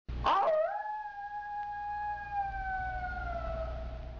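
A single long howl that starts abruptly, loudest in its first half-second, then holds one pitch and sinks slowly lower, still sounding at the end. A steady low hum runs beneath it.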